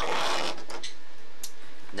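Close handling noise from hands moving LEGO minifigure pieces near the camera. A brief rubbing scrape comes at the start, then a few light plastic clicks.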